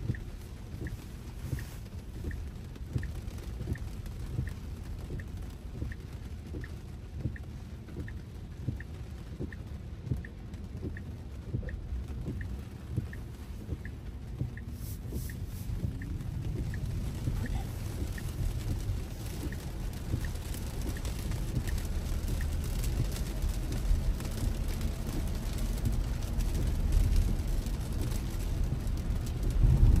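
Heard from inside the cabin, a Tesla's turn-signal indicator ticks about twice a second over the low drumming of heavy rain on the car. The ticking stops about halfway through. Tyre and road noise on the wet pavement then builds steadily as the car picks up speed.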